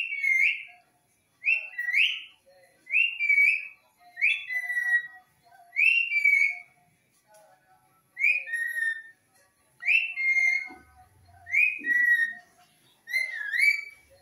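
Indian ringneck parakeet whistling a short call about nine times, roughly every second and a half. Each whistle starts high and drops in pitch, some with a quick upward hook at the end.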